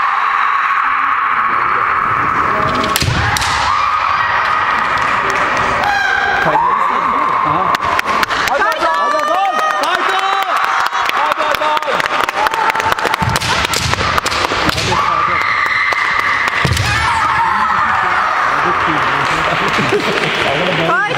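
Kendo fighters' kiai: long, drawn-out shouts held for seconds at a time, then quick short shouts in the middle of the bout. Through that middle stretch, a dense run of sharp knocks as the bamboo shinai clash and strike.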